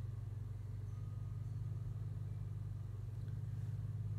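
A steady low hum with nothing else over it.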